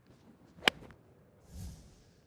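Golf iron striking the ball cleanly: one sharp, crisp click about two-thirds of a second in, the sound of solid, flush contact. A brief, softer rush of noise follows about a second later.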